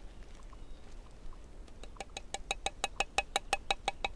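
Flat of a steel knife blade tapping a lead shot against a hatchet head used as an anvil: a quick, even run of ringing metallic taps, about seven a second, starting about two seconds in. The taps are crimping the lead weight shut onto the fishing line.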